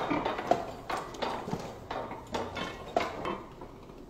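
Antique flywheel-driven platen printing press running, its mechanism clacking in a string of sharp knocks roughly every half second to a second, thinning out near the end.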